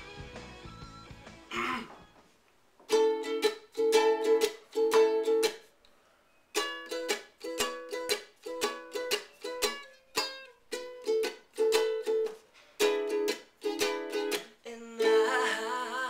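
Ukulele strummed in chords: three strums about three seconds in, then a steady pattern of about two strums a second. A man's voice starts singing over it near the end.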